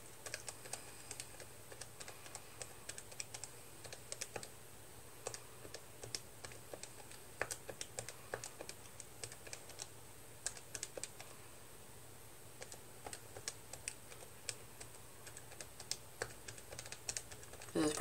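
Buttons of a Texas Instruments TI-30X IIS scientific calculator pressed one after another, a run of soft, irregular clicks as a long string of figures is keyed in to be added up.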